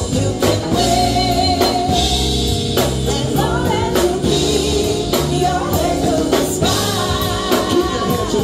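Live Afro-fusion reggae band: vocalists singing over drum kit, bass guitar and keyboard with a steady beat.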